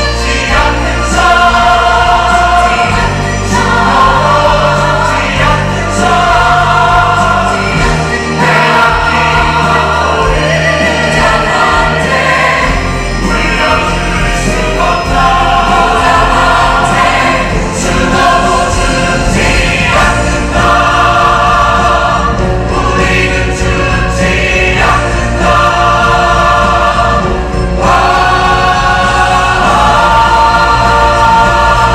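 Stage musical ensemble number: a male lead voice singing with a chorus of male voices over instrumental accompaniment, loud and continuous.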